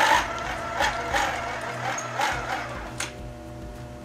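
Ringing crank of a shipboard sound-powered telephone station being turned by hand: a run of irregular mechanical clicks and rattles over a steady low hum.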